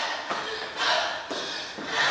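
A person exercising hard: quick, heavy breaths and trainers stepping and scuffing on a hard hall floor during fast side steps. It comes as about three short, noisy bursts, each well under half a second.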